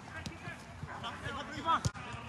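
Players' voices calling across an outdoor soccer pitch during play, faint and scattered, with a louder short shout and a sharp knock near the end.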